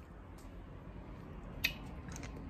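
Quiet room tone with one sharp click near the end and a fainter tick about half a second in.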